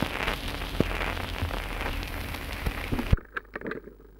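Surface hiss and crackle from a 78 rpm shellac record with no music left in the groove, over a low mains hum. The uploader blames a stylus too small for the groove, dragging along its bottom. About three seconds in comes a loud click and the noise cuts off suddenly, leaving a few faint clicks.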